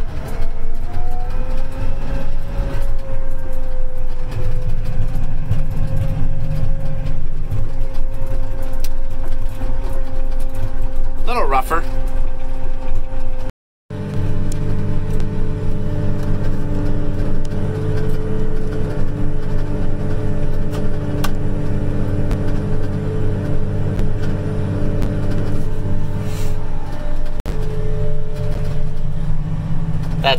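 Apache self-propelled sprayer's engine running steadily under load inside the cab while spraying. Its pitch climbs a little over the first few seconds after an upshift from second gear. The sound cuts out for a moment about fourteen seconds in, then the engine carries on steadily.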